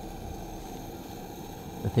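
Water heating in a stainless-steel jug just short of the boil, giving a steady low rushing noise.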